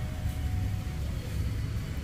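Low, steady rumble of background room noise, with a faint steady hum that fades out about a second in.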